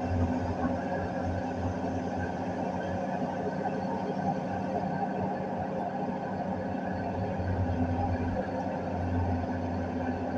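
Komatsu hydraulic excavator's diesel engine and hydraulics running steadily under work, heard from inside the operator's cab as the boom and bucket are moved.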